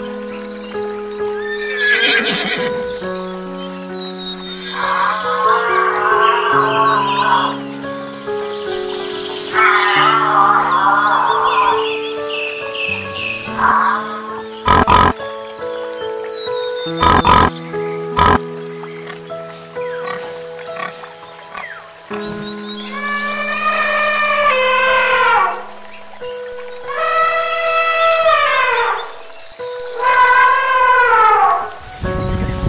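Background music with steady held notes and animal calls mixed over it: two quavering horse whinnies in the first half, a few sharp knocks around the middle, and a series of falling calls in the last several seconds.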